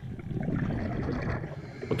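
Underwater sound from a dive camera: a low, crackling rush of water and bubbles that swells just after the start and eases off near the end.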